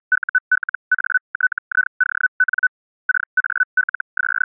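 A single high audio tone keyed on and off in quick short groups, some steady and some chopped into rapid pulses, with a brief pause about three seconds in: a radio data or Morse-style transmission meant to be decoded by software.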